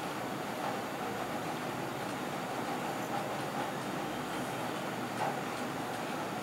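Steady room noise, an even hum and hiss with a few faint clicks scattered through it.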